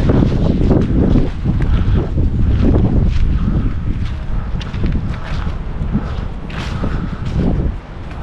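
Wind buffeting the microphone in a loud, uneven rumble, with scattered footsteps and scuffs of someone walking over it.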